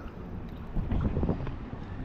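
Small sea waves sloshing and lapping against a camera held at the water's surface, with wind buffeting the microphone. The splashing swells briefly about a second in.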